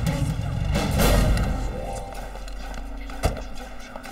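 Dramatic background score with a deep low rumble, loudest in the first half and then fading, and a single sharp thud about three seconds in.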